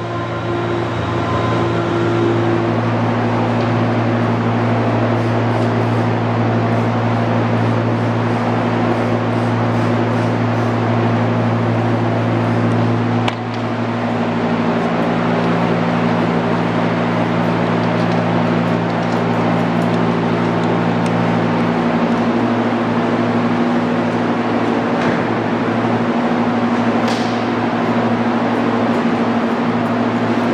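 A loud, steady droning hum made of several held tones, which changes abruptly about 13 seconds in and shifts again a little past 20 seconds.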